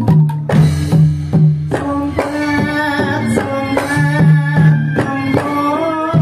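Live Javanese dance-accompaniment music led by a kendang barrel drum played in sharp strikes over sustained low pitched tones. A wavering higher melody joins about two seconds in.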